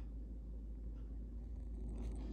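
Quiet room tone: a low steady hum, with a faint soft tick about once a second.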